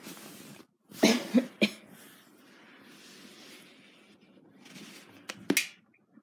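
Pretend coughing as part of role play: a quick cluster of three coughs about a second in, then two more near the end.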